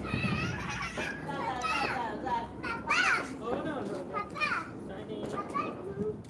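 Several children's voices calling and chattering over one another, with no clear words; one high voice sweeps sharply up about three seconds in.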